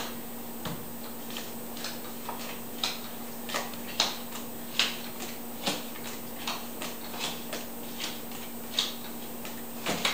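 Tarot cards being dealt from the deck and laid down on a cloth-covered wooden table: a string of light clicks and taps, roughly one every half second to a second, over a faint steady hum.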